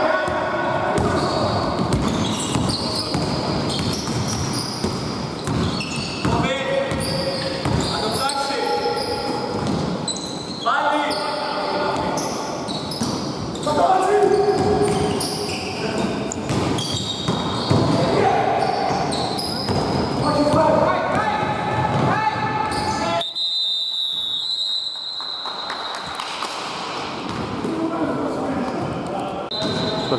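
Basketball bouncing on a hardwood gym floor during a game, with repeated sharp knocks and indistinct players' voices, echoing in a large hall.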